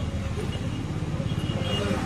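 Fast, steady drumming on dhak drums, low and pulsing, with people talking over it.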